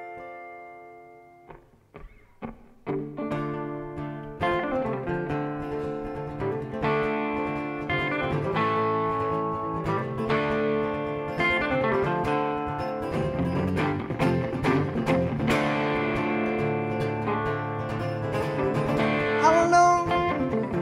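Two guitars, a hollow-body archtop and an acoustic, play the instrumental opening of a song. A chord rings out and fades, a few single picked notes follow, and both guitars come in together about three seconds in and play on steadily.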